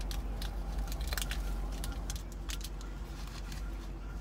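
Scattered small clicks and crinkles of hands handling a small packet of ginseng energy pills as a pill is taken out, over a steady low hum.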